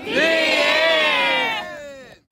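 A long vocal cry or shout that rises at its start, holds while slowly falling in pitch, and fades out near the end as the track closes.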